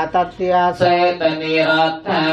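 Buddhist blessing chant: several voices reciting together in a steady, near-monotone drone, with syllables changing over a held low pitch.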